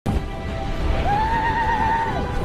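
Film soundtrack: score music over a steady low rumble, with one held, wavering high-pitched cry entering about a second in.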